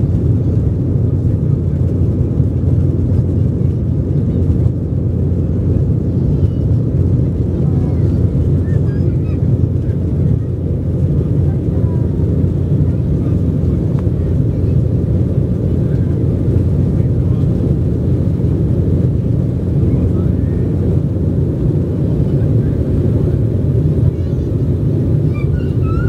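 Cabin noise of an Embraer 190 jet on its takeoff run and initial climb, heard from a window seat. Its twin turbofan engines at takeoff power make a loud, steady, low roar.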